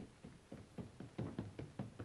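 Hurried footsteps: a quick, uneven series of faint light knocks, about five a second.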